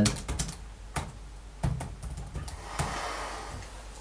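Computer keyboard being typed on: a run of irregular keystroke clicks, with one louder key strike a little before the middle.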